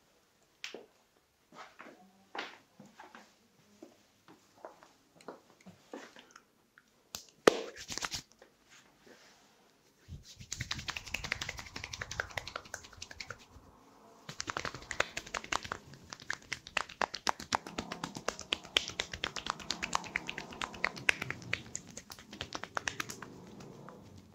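Hands working briskly over a person's bare arm in a massage: a dense, fast run of skin-on-skin rubbing and slapping from about ten seconds in. Before that, only scattered light taps and clicks, with one sharp snap-like click.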